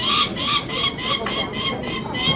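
Peregrine falcon chick repeatedly calling while held in the hand, a rapid series of short, high-pitched calls at about three a second.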